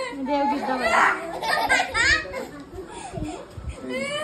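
Children's voices: a young girl's high-pitched playful talking and squeals, with other voices joining in.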